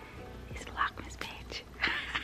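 A woman whispering close to the microphone: breathy, unpitched bursts, with a louder one near the end.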